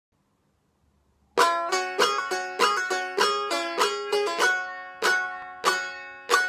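Bağlama (Turkish long-necked saz) playing an instrumental opening: after about a second and a half of silence, a quick run of plucked, ringing notes begins, then slows to strong strokes about every half second, each fading before the next.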